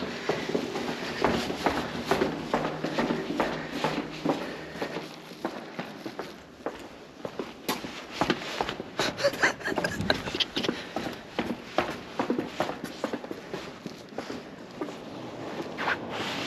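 Footsteps walking along a hard corridor floor: a run of short, uneven steps.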